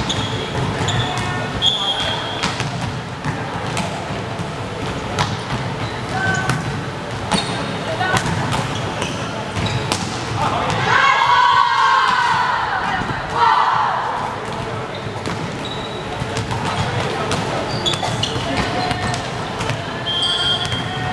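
Indoor volleyball play on a wooden court: the ball is struck and hits the floor in sharp smacks, and sneakers squeak briefly. Players shout loudly for a few seconds about halfway through.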